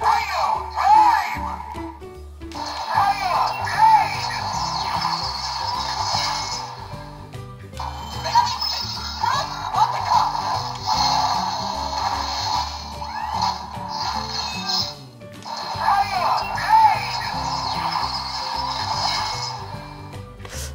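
The Biklonz Megabeast Cross Attacker toy robot's electronic sound gimmick plays its special-attack sound through the toy's small built-in speaker. There are four runs of recorded music, voice and effects, each a few seconds long with short gaps between, thin with little bass.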